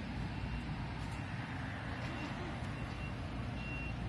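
Steady low rumble of street traffic and vehicle engines, with a few short, faint high-pitched beeps spread through it.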